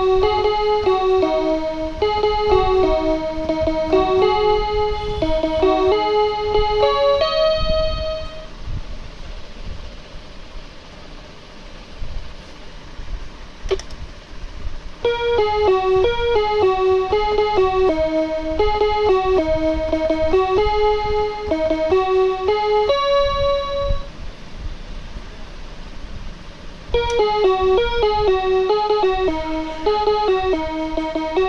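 Gooyo GY-430A1 toy electronic keyboard sounding a simple melody one note at a time, in three phrases with pauses about 8 seconds in and again near 24 seconds. A single click falls in the first pause.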